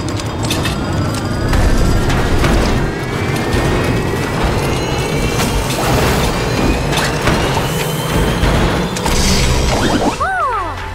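Cartoon sound effects of a malfunctioning ice-cream machine running out of control: a whirring whine rising slowly in pitch, with repeated mechanical clanks and rattles over a low rumble. Background music plays along.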